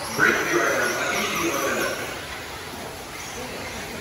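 Indistinct voices and background chatter, with a brief louder sound just after the start and a quieter, even background through the rest.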